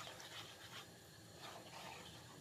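Near silence, with faint soft sounds of a spatula stirring a thick creamy sauce in a frying pan.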